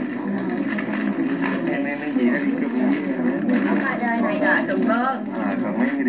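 Speech: voices talking, heard as played back through a television's speaker and recorded again.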